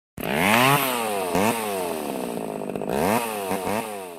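Chainsaw engine revved hard about five times, the pitch jumping up and falling back each time, running more steadily between the revs.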